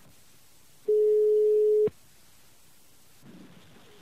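Telephone ringback tone heard over the line: one steady tone about a second long, cut off by a click. It signals that the dialled phone is ringing at the other end.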